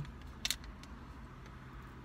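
Quiet car cabin with a steady low hum from the idling car, and a brief faint click about half a second in.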